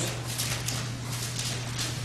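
Thin paper pages of a Bible rustling as they are turned, a run of light scratchy flicks in the first second, over a steady low hum.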